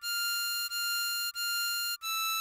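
Harmonica tone playing the same high note, hole 9 draw (F6), three times in a row, each note held evenly for about two-thirds of a second.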